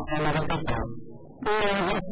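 A man speaking Portuguese, with a short pause about a second in.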